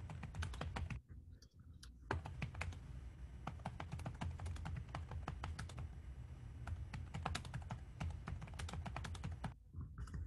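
Computer keyboard being typed on, a quick irregular run of key clicks picked up through a participant's microphone on a video call, over a low hum. The clicks drop out briefly about a second in, then carry on.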